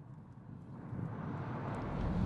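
Camouflaged BMW 3 Series plug-in hybrid prototype driving past close by, a steady rushing noise without a distinct engine note that grows louder as it nears.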